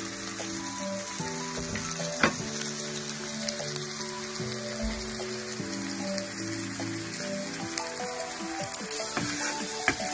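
Sliced onions, curry leaves and green chillies sizzling in hot coconut oil in a wok, a steady frying hiss with an occasional click, under background music of sustained notes.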